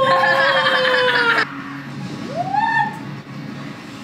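A woman's long, high drawn-out "ooooh" of surprise, sliding slightly down in pitch and breaking off after about a second and a half, then a shorter rising exclamation about halfway through, over faint background music.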